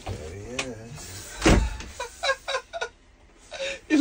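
A zip pulled along in a short buzz that rises and falls in pitch, likely a tent zip, followed by a loud thump about a second and a half in.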